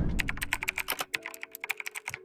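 Rapid keyboard-typing clicks with a few short low notes of a jingle joining about a second in: a livestream donation alert sound effect.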